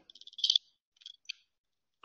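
A few faint, high-pitched clicks: a quick run of tiny ticks ending in a slightly louder click in the first half-second, then two more short clicks about a second in.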